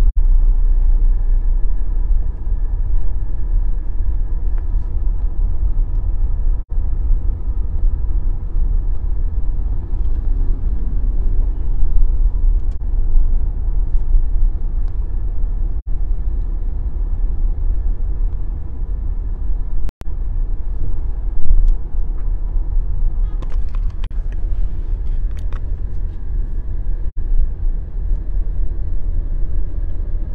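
Steady low rumble of road, engine and wind noise in a moving car. The sound drops out briefly a few times, and a scatter of clicks comes about two-thirds of the way through.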